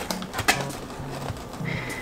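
A few light clicks and rustles of hands pushing folded salami into a parchment-paper-lined cardboard box, over faint background music.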